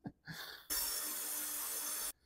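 Craftsman cordless drill running steadily for about a second and a half, its bit driving into thick plastic landscape edging. Its battery is thought to be about to go dead.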